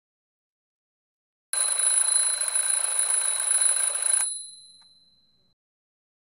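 A bell alarm clock ringing: one continuous ring starting about a second and a half in, cut off sharply after nearly three seconds, then a ringing tail that fades out over the next second.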